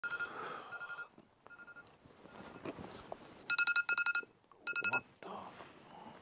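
An electronic device beeping on one high tone. A longer beep at the start is followed by spaced single beeps, then a quick run of about four beeps a little past the middle and one more shortly after.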